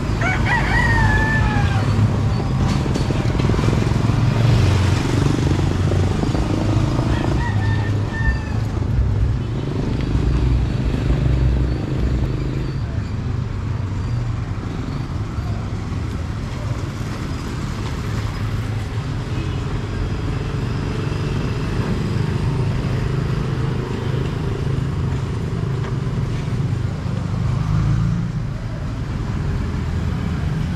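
A rooster crows once right at the start, a single call that falls in pitch at the end, over a steady low background rumble.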